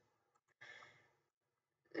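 Near silence, with a short, faint breath out by a person about half a second in, just after a couple of faint ticks.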